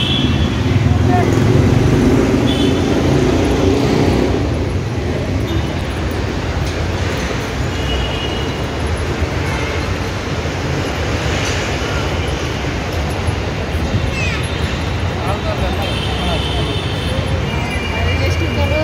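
Steady road-traffic noise with a low rumble, mixed with people's voices talking nearby.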